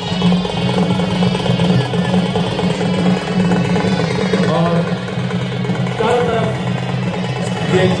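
Chhau dance music: a band of barrel drums playing continuously, loud and busy, with a melody line above.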